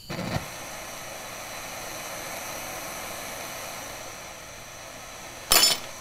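Handheld propane torch lit and burning with a steady hiss, heating lead jig heads before they are dipped in powder paint. A short, sharp clatter near the end.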